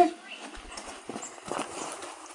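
Footsteps in deep snow: a few short, irregular crunching steps.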